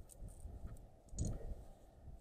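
Metal climbing hardware on the rope, carabiners and the rope device, clicking a few times as the line is handled, the sharpest click just past a second in, over low rubbing and handling noise.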